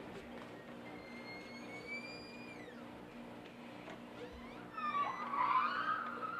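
Door hinges squeaking as a door is pushed open: one long gliding squeak, then a louder, wavering creak near the end, over a steady low hum.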